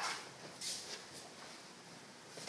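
Two Japanese swords swishing through the air in quick cuts: a sharp whoosh right at the start, another a little under a second in, and a fainter one just after.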